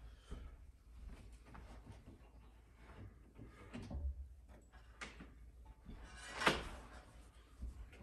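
A glass console table being handled and lifted: scattered light knocks and bumps, a dull thud about four seconds in, and one sharp knock about six and a half seconds in, the loudest of them.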